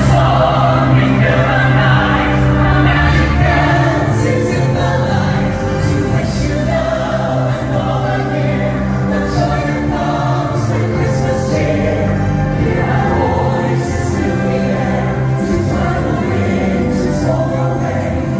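Christmas show music with a choir singing long held notes over an instrumental backing.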